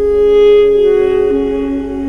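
Armenian duduk, a double-reed woodwind, playing long held notes of a slow meditative melody over sustained background tones. A new, louder note comes in at the start, and a lower line steps down in pitch a little past halfway.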